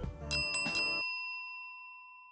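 A bell rings once and its tone rings on, fading slowly, while a music bed under it stops about a second in.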